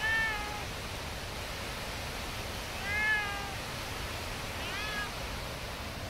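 Black domestic cat meowing three times, each meow rising then falling in pitch, the last one shorter and fainter. A steady waterfall rush runs underneath.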